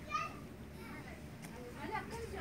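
Indistinct background voices with no clear words, high-pitched like children's, a short sharp call just after the start.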